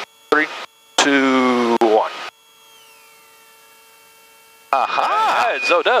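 Cabri G2's low rotor RPM warning horn, heard over the intercom: a warbling tone rising and falling several times a second starts about five seconds in. It follows a quiet stretch of intercom hum with a faint tone gliding down. The horn sounds because rotor RPM has decayed right after the autorotation entry.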